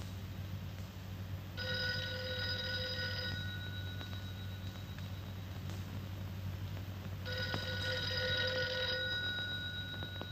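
Old desk telephone's bell ringing twice, each ring lasting about a second and a half, about six seconds apart, over a steady low hum.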